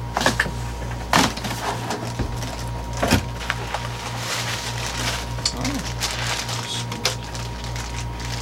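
Cardboard boxes and plastic bubble-wrap packaging being handled as parts are unpacked: a couple of sharp knocks in the first few seconds, then crinkling plastic rustle over a steady low hum.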